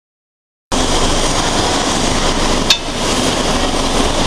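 Mechanical shearing machine running with a loud, steady mechanical din. One sharp crack comes about two and a half seconds in.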